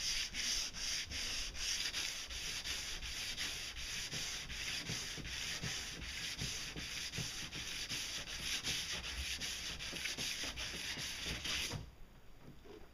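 Hand sanding of a fibreglass boat pontoon hull with sandpaper: brisk, regular back-and-forth rasping strokes, about three a second, that stop abruptly near the end. The sanding smooths a hull left pitted and scratched by barnacle scraping.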